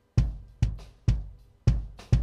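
Soloed kick drum track playing four kick drum hits. The original recorded kick is layered with a replacement DW 22-inch maple kick sample, blended about half and half.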